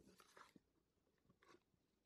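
Near silence, with a few faint crinkles of paper or tape being handled in the first half second and again about one and a half seconds in.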